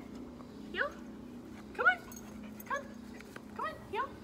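A dog whining in short, rising yelps, about five of them, the loudest about two seconds in.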